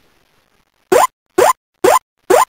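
Silence for about the first second, then three identical short, rising electronic blips about half a second apart, the opening of an electronic music track.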